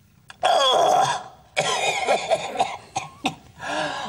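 A man coughing, spluttering and gasping loudly after a swig of strong drink, in two long outbursts, the first about half a second in and the second from about a second and a half.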